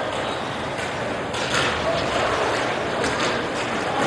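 Indoor roller hockey rink during play: a steady hiss of room noise with a few faint knocks and distant players' voices.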